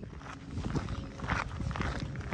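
Footsteps on a gravel path, about two steps a second, over a low rumble.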